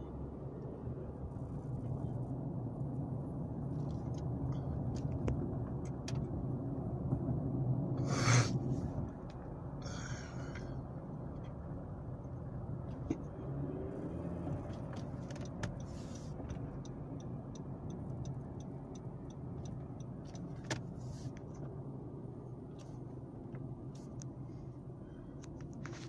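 Steady engine hum and road noise heard from inside a moving car's cabin. A single loud knock comes about a third of the way through, and a short run of quick, even ticks comes a little past the middle.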